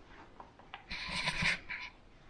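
Cardboard jigsaw puzzle pieces tapped down and slid across a painted wooden tabletop with a clear semi-gloss finish: a few light clicks, then a brief scratchy rubbing about a second in as the pieces slide.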